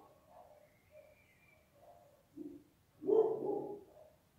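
A dog vocalising: a few faint sounds, then a louder pitched call lasting just under a second near the end.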